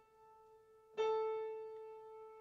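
A single keyboard note, around the A above middle C, played twice. The ring of an earlier strike fades out, then the same note is struck again about a second in and rings down slowly.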